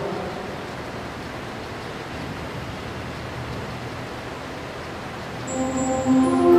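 Steady, even hiss of background noise with no distinct event, while the voice has stopped. About five and a half seconds in, music starts to come in.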